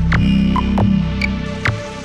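Minimal dark ambient electronic music: a throbbing low bass drone that swells and then fades near the end. Sharp clicks and short high electronic blips sound over it at uneven intervals.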